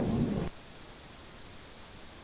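Low room sound from a webcam's audio feed in a hall, cut off abruptly about half a second in as the stream drops out, leaving a steady faint hiss.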